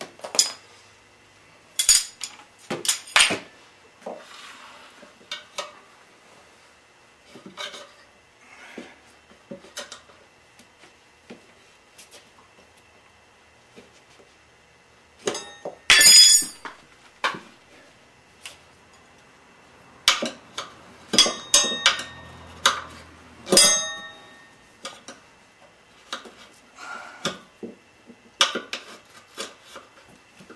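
Metal tire irons clinking and scraping against a spoked motorcycle wheel rim while the bead of a stiff tire is levered on, in a string of irregular clanks with a short metallic ring, the loudest about sixteen seconds in.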